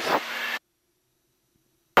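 Steady cockpit noise picked up through an open headset intercom mic, cutting off abruptly about half a second in to near silence as the mic closes.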